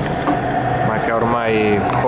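Lazio football supporters chanting: several voices singing and shouting, with long held notes in the second half.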